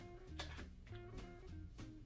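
Quiet background music: a plucked string instrument playing single held notes.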